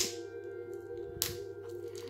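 Soft background music with steady held notes, over which a shrink-wrapped deck of cards is handled: a sharp click at the start and a brief crackle of the plastic wrap just over a second in.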